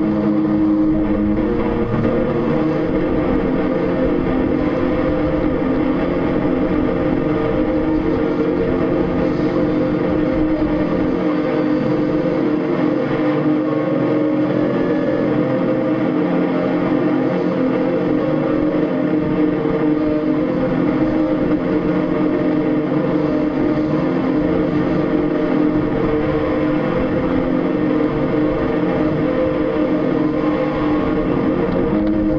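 A steady, unbroken droning hum made of several held low tones.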